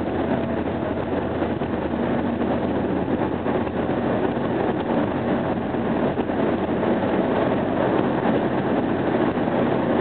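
Steady road and engine noise of a car driving along a highway, heard from inside the cabin, with a low hum under an even rush of tyre and wind noise.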